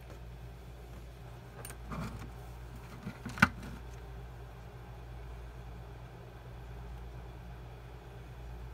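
Handling of a plastic Kobalt 24 V battery pack on a workbench: a few light plastic knocks and one sharp click about three and a half seconds in, over a steady low hum.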